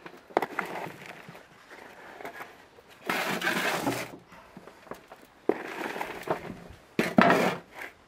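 Hand shovel scooping garden soil from a wheelbarrow and tipping it into a plastic pot: about four gritty scrape-and-pour bursts, most starting with a sharp knock of the shovel.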